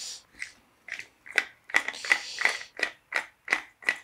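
Hand-held herb grinder twisted back and forth, its teeth shredding a cannabis bud in a quick run of short crunching clicks, about four a second.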